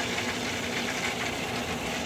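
Steady mechanical hum and hiss of pool equipment running.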